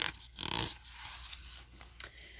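A page of a hardcover picture book being turned by hand: a short paper swish about half a second in, then a soft rustle as the page settles.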